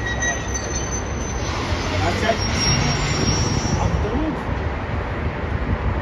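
A ChME3T diesel shunting locomotive's engine running with a steady low drone as it pushes two VL80S electric locomotives along the track, with voices in the background.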